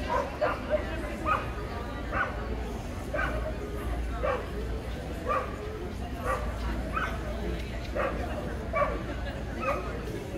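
A dog yipping over and over at a steady pace of about one yip a second, over background chatter.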